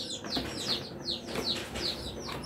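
Chicks peeping: a steady run of short, falling peeps, about five a second.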